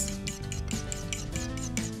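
A metal fork whisking a wet yogurt, lemon juice and egg white mixture in a ceramic bowl: a quick, steady run of scrapes and rubs against the bowl.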